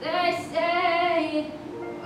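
A girl singing solo into a handheld microphone, holding a long note with vibrato for about a second and a half, then moving to a lower, quieter line.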